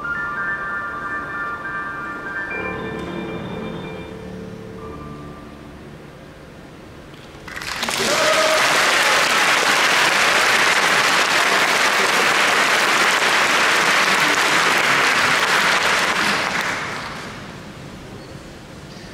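Steinway grand piano's final notes ringing out and dying away, then after a short hush an audience applauding for about nine seconds before the clapping fades out.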